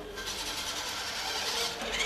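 Small hobby servo motors in a humanoid robot's arm joints whirring as the arms lift in response to a 'hands up' command.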